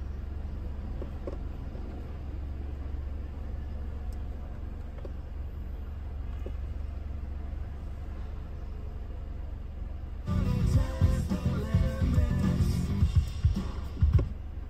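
A steady low hum in the car cabin, then music starts suddenly about ten seconds in, played through the car's speakers from the aftermarket Android head unit: the sign that the AUX input is now set correctly and the Android sound works.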